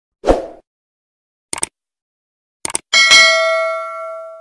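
Subscribe-button animation sound effect. It begins with a short thump, then two quick double mouse-clicks about a second apart, then a bright bell ding near the end that rings on and fades slowly.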